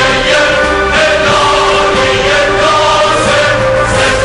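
Choir and orchestra performing an anthem, the voices holding long sustained notes over the orchestra.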